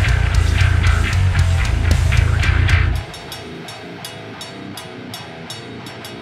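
Deathcore track in Drop A tuning: a five-string bass through Neural DSP Parallax with drums and distorted guitars, heavy in the low end. About halfway through, the bass and low end cut out and the music drops much quieter, leaving evenly spaced high ticks at about four a second.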